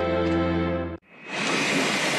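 A held chord of film-score music ends about a second in. A loud, steady mechanical din then swells in, typical of power machinery running in a workshop.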